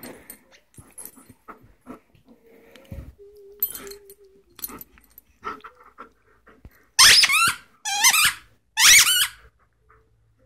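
A squeaker inside a plush fox toy squeaking three times, about a second apart, near the end, as an Alaskan malamute bites down on it. Before that, faint rustling and mouthing of the toy.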